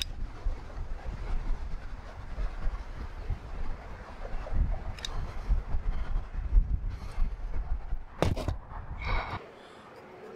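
Wind buffeting the microphone, a gusting low rumble that cuts away suddenly near the end. A sharp knock comes shortly before the rumble stops.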